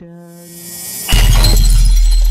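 A dramatic edited sound effect: a held tone under a rising swell, then about a second in a sudden loud crash with a glassy shatter and a deep boom that rings on and slowly fades.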